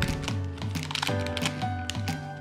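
Background music: held notes over a bass line that steps from note to note about twice a second.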